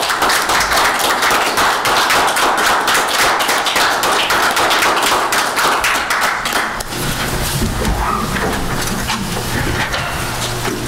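A small group of people applauding by hand. The clapping is dense for about seven seconds, then thins out to scattered claps.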